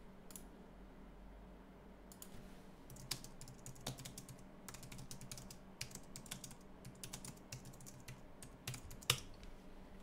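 Computer keyboard being typed on, faintly: irregular key clicks starting about two seconds in, with one louder clack near the end.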